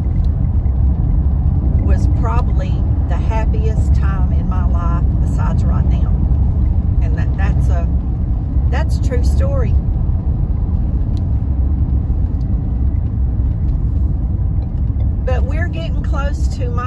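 Steady low road and engine rumble heard inside a moving vehicle's cabin at highway speed, with a voice speaking in short stretches over it.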